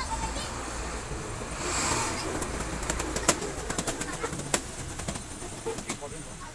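Balloons being handled: a foil balloon crinkling and latex balloons rubbing, with a run of sharp, irregular clicks through the second half.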